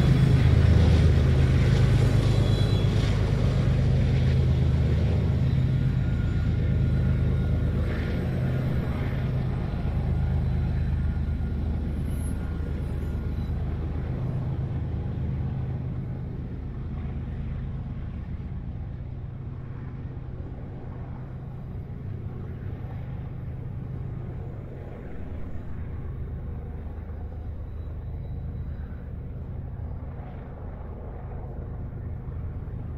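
Freight train going by, with a steady low diesel engine rumble that fades gradually as it moves away.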